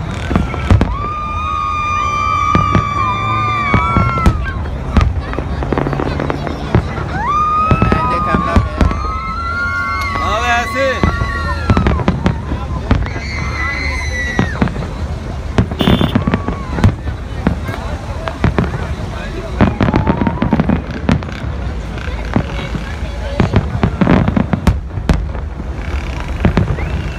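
Aerial fireworks display: a dense run of bangs and crackling bursts throughout. Long, held, high calls from the crowd sound over it in the first half.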